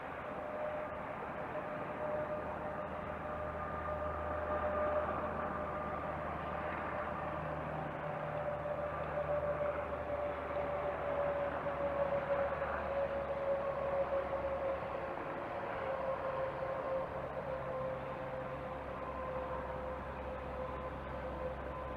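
A steady distant mechanical drone, its hum slowly falling in pitch, over a constant background hiss.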